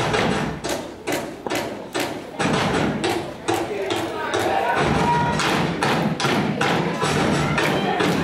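Stepping: steady, rhythmic thumps of feet and broom handles striking a wooden stage floor, about three a second. Music and voices come in underneath from about halfway.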